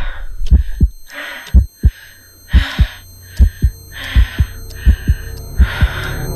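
Heartbeat sound effect: deep lub-dub double thumps about once a second over a low hum, with hissing noise swelling on each beat.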